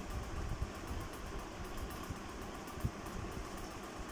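Steady hum of a running electric fan in a quiet room, with faint scratching of crayon strokes on paper.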